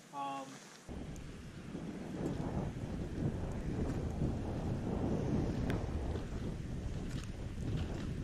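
Wind buffeting the microphone: a low, rumbling rush that starts abruptly about a second in and builds over the next couple of seconds, with a few faint clicks.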